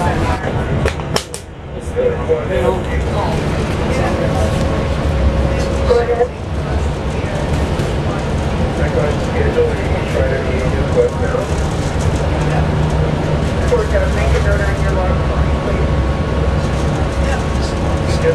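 Inside a moving transit bus: steady low engine and road rumble, with passengers' voices talking indistinctly over it.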